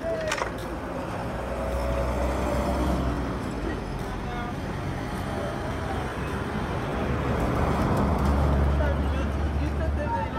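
Road traffic: cars driving past close by, a low rumble that swells as a vehicle goes by about two seconds in and again, louder, over the last three seconds.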